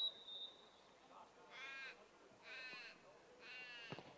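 A referee's whistle gives one short, steady blast, then a crow caws three times, about a second apart, each call drawn out.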